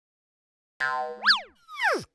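Cartoon-style sound effects: a short ringing tone, then a quick boing that sweeps up in pitch and straight back down, then a falling whistle-like glide.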